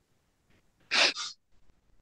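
A woman sneezes once over video-call audio: a sharp, loud burst about a second in, with a short second burst right after it.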